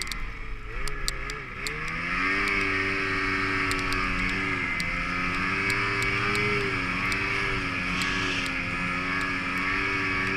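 Ski-Doo Summit X snowmobile's two-stroke engine running under throttle, heard from the rider's helmet: its pitch climbs about two seconds in, then holds fairly steady with small dips. A steady rush of wind runs under it.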